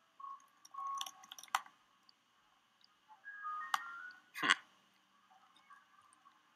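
A few sparse, faint computer-keyboard clicks over quiet room tone, with faint high tones in the background, and a short murmured 'hmm' about four seconds in.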